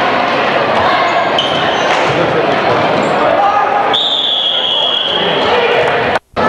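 Gym game sound: a basketball bouncing on the hardwood under the steady talk of spectators. About four seconds in, a referee's whistle blows one long, high blast that stops play.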